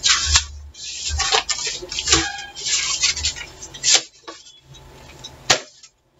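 Things being handled on a desk: short bursts of rustling and scraping, with sharp clicks about four and about five and a half seconds in.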